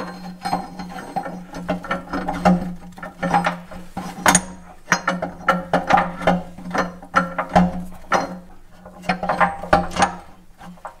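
Steel transmission gears clinking and knocking irregularly as a splined countershaft is worked through them by hand, the splines being lined up. Background music with a steady low held tone runs underneath.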